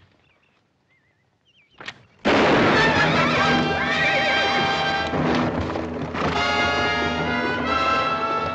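About two seconds of near silence, broken by one brief sharp sound. Then a loud dramatic orchestral film score bursts in suddenly and carries on.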